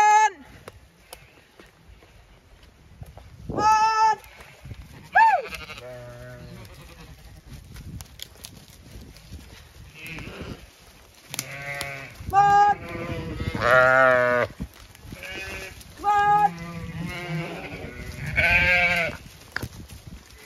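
Zwartbles ewes bleating repeatedly, about ten wavering calls, a few at first and then coming thicker and overlapping in the second half as the flock moves past.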